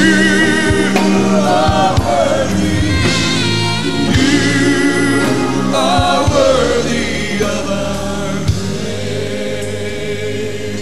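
Gospel choir singing a worship song with live band accompaniment, including regular drum-like hits, easing off slightly toward the end.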